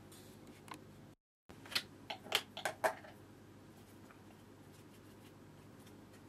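A quick run of about five sharp clicks and taps, a few tenths of a second apart, from watercolour painting gear being handled at the easel, over a low steady hum. Just before them the sound cuts out dead for a moment.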